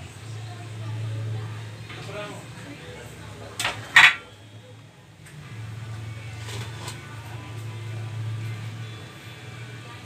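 A steady low electrical hum with two sharp clicks close together about four seconds in. The hum drops out for about a second after the clicks, then returns.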